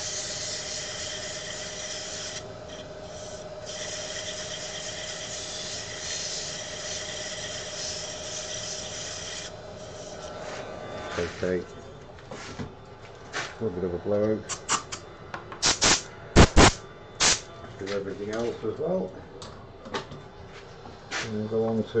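Abrasive paper sanding the inside of a chestnut goblet turning on a wood lathe: a steady rasping hiss with the lathe running, for about the first ten seconds. Then the sanding and the lathe stop, followed by scattered sharp clicks and handling noises.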